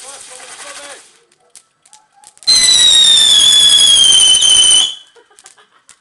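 Whistling firework going off: a loud, shrill whistle over a rushing hiss, lasting about two and a half seconds and sliding slightly down in pitch before cutting off suddenly. In the first second a crackling hiss from burning fireworks runs under laughter.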